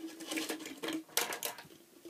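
A run of sharp clicks and taps from plastic dolls and toy pieces being handled and knocked together, several of them bunched just after the first second.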